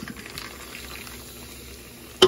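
Diet Pepsi poured from a can into a glass of ice, the cola fizzing steadily as the glass fills.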